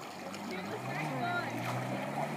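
Jet ski engine running, its pitch sliding up a little about a second in and then holding steady.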